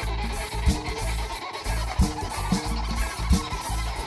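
Instrumental passage of a Georgian folk song played live: string instruments over a steady bass line and a regular beat, with no singing.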